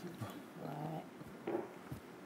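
A person's short wordless vocal sound, one held note of about half a second, with a brief quieter sound a little later.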